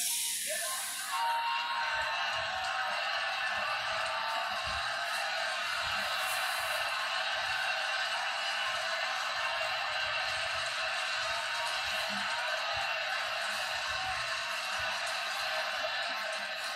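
Arena crowd cheering steadily, heard through a television's speaker.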